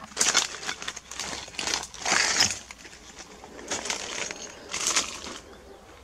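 Footsteps crunching on dry twigs and broken concrete rubble, several uneven steps.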